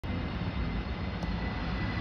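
Airbus A321 jet airliner on final approach, passing low overhead with a steady engine rumble and a faint, thin high whine.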